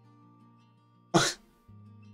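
A man coughs once, short and sharp, about a second in, over faint background guitar music.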